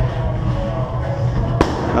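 A boxing glove punch landing on a coach's punch pad, a single sharp smack about a second and a half in.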